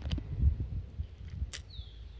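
Wind buffeting and hand-handling noise on a phone's microphone, uneven low rumbling that peaks about half a second in. A sharp click follows about a second and a half in, then a short, falling bird whistle near the end.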